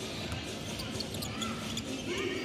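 Basketball court sounds during live play: the ball bouncing on the hardwood floor and a few short sneaker squeaks, over arena background noise.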